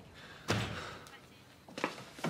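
A door slams shut about half a second in, ringing on briefly in the room, followed by a couple of lighter knocks near the end.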